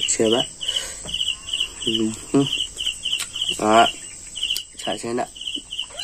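Insect chirping in a steady rhythm, short high pulsed chirps at about three a second.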